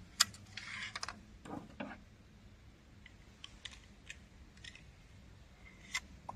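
A sharp click just after the start, then scattered soft clicks and rattles of a crossbow being handled and readied for the next shot.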